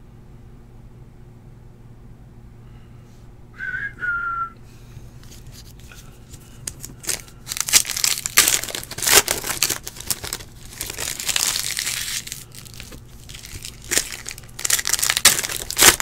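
Foil wrapper of a trading-card pack crinkling and tearing as it is ripped open by hand, in repeated bursts from about six seconds in. A short high squeak sounds just before, about four seconds in.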